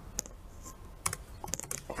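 Typing on a computer keyboard: a few separate keystroke clicks, with a quicker run of them in the second half.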